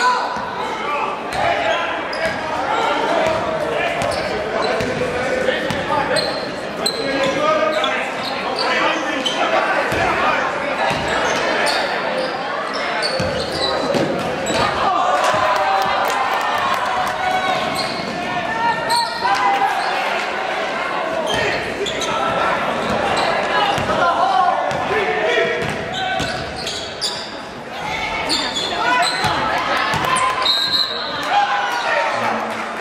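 Gym crowd chatter echoing in a large hall during a basketball game, with a basketball bouncing on the wooden court and short knocks throughout.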